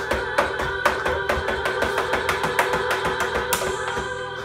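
Electronic drum kit played hard with drumsticks: a fast, even run of strikes, about five or six a second, over music with steady held notes, with one heavier hit near the end.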